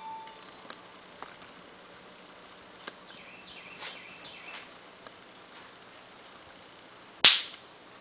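Quiet room with a few faint, short falling chirps and scattered light clicks; one sharp click about seven seconds in is the loudest sound.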